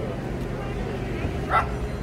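A dog yips once, briefly, about one and a half seconds in, over steady low background noise.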